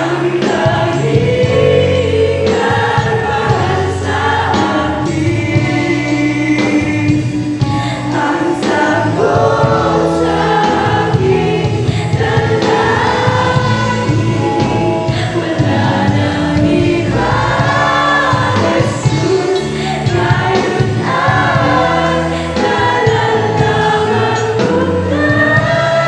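Mixed youth choir of young men and women singing a gospel song into microphones, over a steady instrumental backing.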